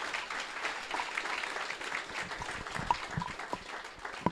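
Audience applauding, the clapping thinning out and fading gradually.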